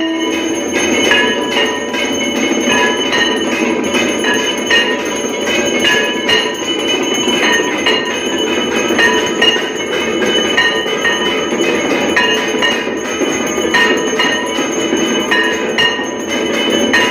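Temple bells rung rapidly and continuously for the aarti: a dense metallic clanging with repeated ringing strikes, about two a second.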